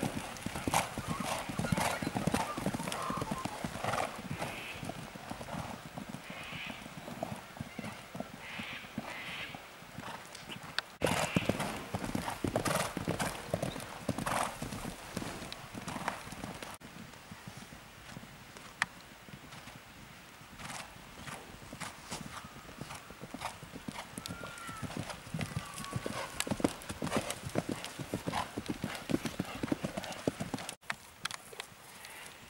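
Hoofbeats of two young Thoroughbred fillies cantering one behind the other on a dirt track, a rapid drumming of strikes. The hoofbeats grow fainter about halfway through and pick up again near the end.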